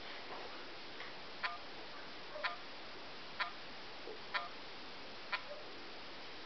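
Touchscreen phone's keypad giving five short clicking key tones about a second apart as a SIM PIN is entered and confirmed.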